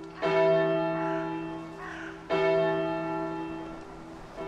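A large church bell struck twice, about two seconds apart, each stroke ringing with many overtones and slowly fading.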